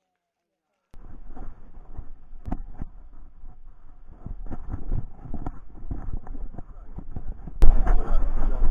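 Harness-mounted action camera on a trotting dog, picking up irregular scuffs and knocks of its movement on a gravel path over a low rumble. Near the end a louder rumbling starts as the camera rubs against the dog's curly fur.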